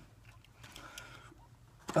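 Faint handling sounds of a plastic model kit: hands moving over the parts sprue and box, a few soft rustles in the first second, otherwise a quiet room.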